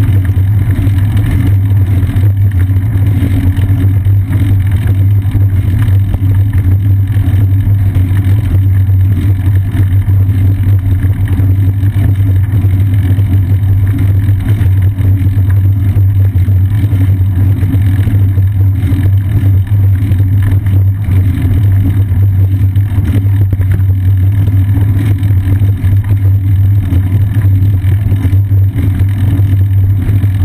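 Steady, loud low rumble of wind and tyre vibration picked up by a bicycle-seat-mounted GoPro Hero 2 during a ride, unchanging throughout.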